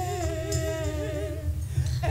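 A voice singing a hymn, holding one long note with a wide vibrato that fades out near the end, over a steady low rumble.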